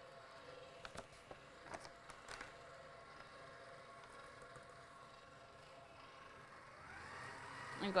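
Stand mixer running at low speed, a faint steady motor hum as it blends pumice into foaming bath whip, with a few light clicks in the first couple of seconds. Near the end the hum grows louder as the mixer speed is turned up.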